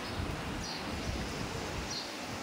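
Steady outdoor street ambience with wind rumble on the microphone. A bird gives two short high chirps about a second apart.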